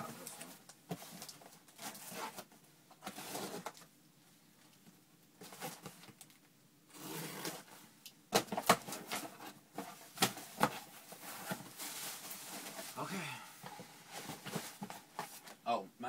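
Cardboard shipping box being handled and opened, with rustling, knocks and tearing of packing, and bubble wrap inside. The handling is busiest in the second half, after a quieter lull of a few seconds.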